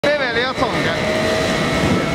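Single-shaft shredder running while it shreds aluminized PE film: a steady grinding noise with a constant machine whine. A wavering pitched sound rides over it in the first half-second.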